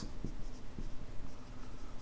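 Marker pen writing on a whiteboard: a run of short, faint strokes.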